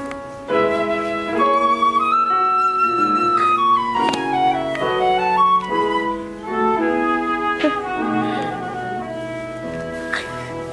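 Live transverse flute playing a classical melody, with a long held high note about two seconds in, then a quick descending run of notes.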